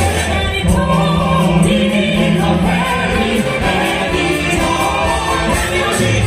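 A live symphony orchestra playing with singing over it, including a long held low note for about three seconds.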